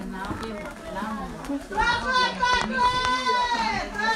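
A young child's high voice calling out in long drawn-out cries, each held about a second and falling away at the end, over background chatter from a room of people.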